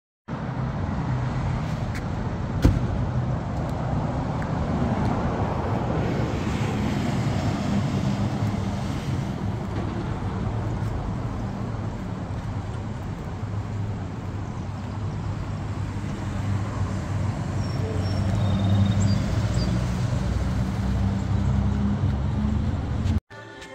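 Street traffic: the steady rumble of cars and engines running past, swelling near the end, with one sharp click about two and a half seconds in.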